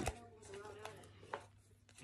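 A deck of oracle cards being handled to pull cards out: faint rustling with a couple of light clicks of card against card.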